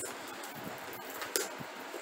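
Steady hiss of a room fan, with light handling noise and one brief clink of a metal purse chain about one and a half seconds in.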